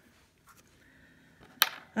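Faint room tone, then a single sharp click of a hard object knocking on the desk, near the end.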